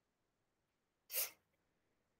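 A person sneezing once: a single short, sharp burst just over a second in.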